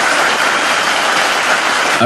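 Large audience applauding, a steady, even clapping.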